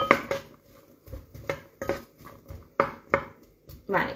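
A spoon knocking and scraping against a cooking pot: a series of about ten irregular, sharp clinks.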